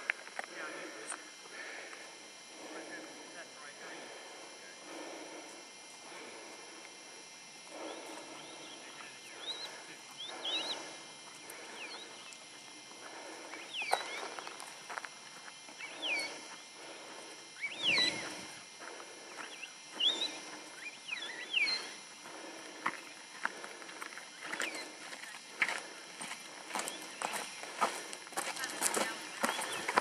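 Footsteps on a gravel trail at a walking pace, with short whistled notes, rising and falling, scattered through the middle.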